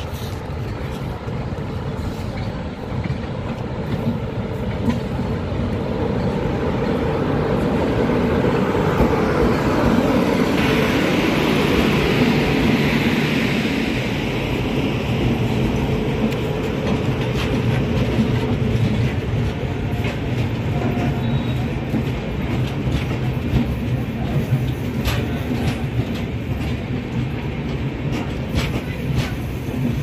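A WAP-7 electric locomotive and its passenger coaches passing close by as the train arrives. The sound swells to its loudest about ten seconds in as the locomotive goes by, then settles into the steady rolling of the coaches with wheels clicking over rail joints.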